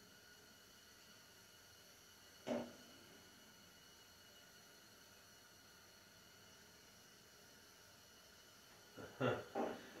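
Near silence: quiet room tone in a small room, broken once about two and a half seconds in by a short vocal sound, with laughter starting near the end.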